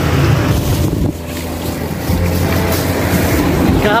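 Low, steady rumble of wind buffeting the microphone mixed with road traffic noise. It drops in level about a second in and picks up again a second later.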